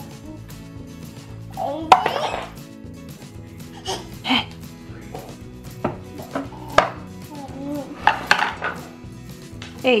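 Wooden toy blocks and a wooden baby walker knocking and clattering on a wood floor as a toddler handles them: a dozen or so irregular sharp knocks, the loudest about two seconds in and a cluster near the end as the walker tips over. Soft background music plays underneath.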